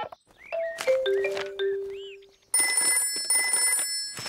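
A short musical cue of a few notes stepping down in pitch, then, from about two and a half seconds in, a cartoon telephone ringing with a fast, bell-like trill.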